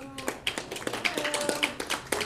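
Scattered clapping from a small audience: many quick, uneven claps, with a few voices.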